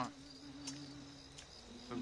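Crickets chirping faintly, over a low steady hum that stops shortly before the end.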